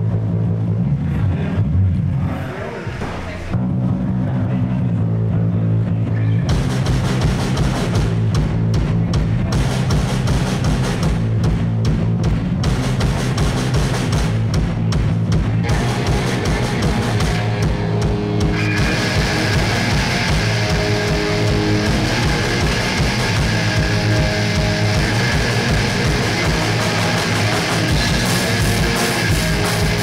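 Live heavy rock band playing a song with distorted electric guitars, bass guitar and a drum kit. A low riff opens with a short dip, the drums come in with a steady beat a few seconds later, and the sound grows fuller and brighter about two-thirds of the way through.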